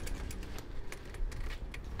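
Manual wheelchair rattling as it is pushed over block paving: many quick, irregular metallic clicks over a low rolling rumble.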